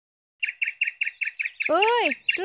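A small bird chirping in a quick run of short, high chirps, about eight a second. A person's voice starts speaking near the end.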